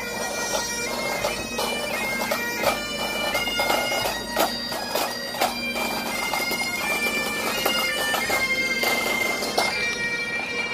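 A pipe band's Highland bagpipes playing a tune over their steady drones, with sharp knocks and beats running through it.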